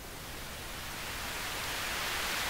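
Pink test noise from a signal generator, played through a Massey VT3 equalizer as its mid control is turned up to a boost: a steady hiss that grows gradually louder.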